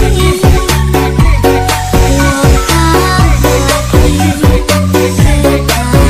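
Background music: an electronic dance-pop track with a strong bass line and a steady beat.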